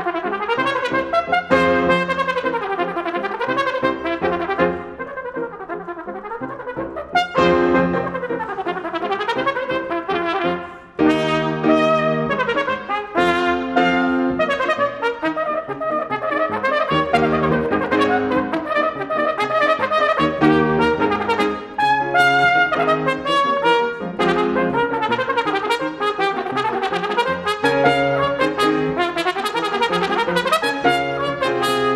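Solo trumpet with piano accompaniment, playing a virtuoso concert piece: quick runs of short notes mixed with held notes, with a brief break about eleven seconds in.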